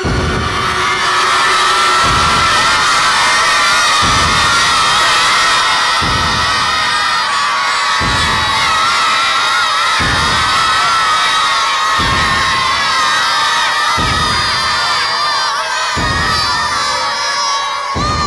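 A crowd of many voices shouting and cheering together, over a low beat that pulses about every two seconds.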